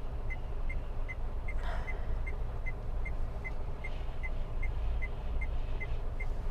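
Steady low hum of a car idling at a standstill, heard inside the cabin, with a faint short high beep repeating about two and a half times a second. A brief soft rustle comes about two seconds in.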